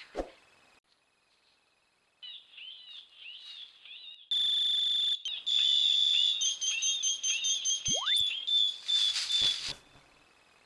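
Electronic animal-deterrent device sounding its call: a string of quick high chirps, then a loud, steady, piercing electronic beep with fast warbling chirps and a quick rising sweep over it, cutting off near the end.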